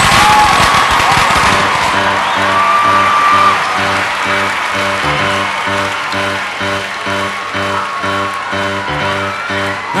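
Live band playing a pop song's instrumental intro, a short figure repeating about twice a second, under a crowd cheering and whistling that dies down after the first few seconds.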